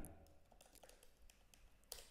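Faint computer keyboard keystrokes: a few light taps, then one sharper key press near the end.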